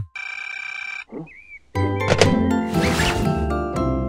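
A mobile phone rings with a steady electronic ringtone for about a second. A short wobbling sound effect follows, then from about two seconds in, loud music with percussive beats takes over.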